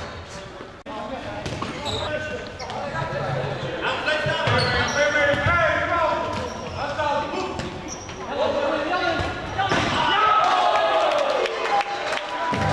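A futsal ball being kicked and bouncing on the wooden floor of a sports hall, a string of separate knocks, with players shouting.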